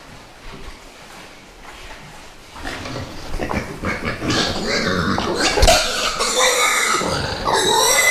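A young pig of about 50 kg squealing loudly as it is grabbed and lifted off the ground, starting about two and a half seconds in and growing louder.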